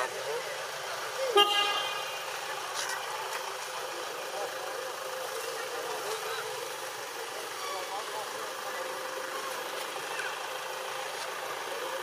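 A single short horn toot about a second and a half in, over steady outdoor background noise with faint distant voices.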